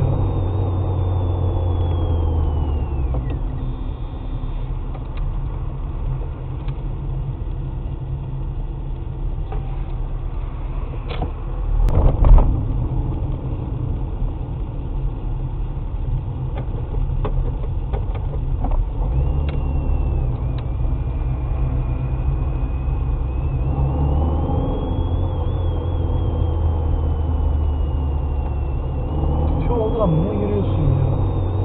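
Car interior sound: the engine running and road noise, a steady low hum that swells at times, with a thin high whine that rises and falls. There is a loud bump about twelve seconds in.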